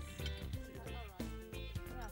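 Background music with a steady rhythm of plucked-sounding notes.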